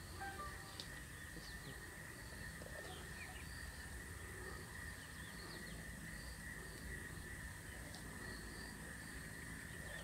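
Faint bush ambience: a steady high insect drone, with short chirps repeating about once or twice a second and a few brief bird calls over a low background rumble.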